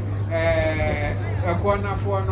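A man's voice through a microphone, one long drawn-out held vowel followed near the end by a few quick syllables, over a steady low electrical hum.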